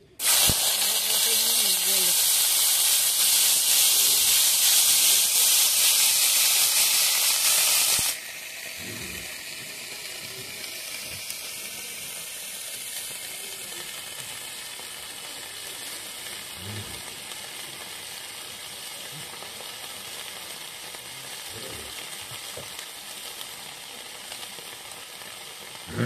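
Chopped yardlong beans dropped into hot oil in a metal wok over a wood fire, setting off a loud frying sizzle. After about eight seconds it drops abruptly to a quieter, steady sizzle as the beans keep frying.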